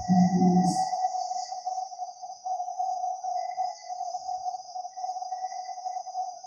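A steady high-pitched tone holding one pitch throughout, with a fainter high hiss above it.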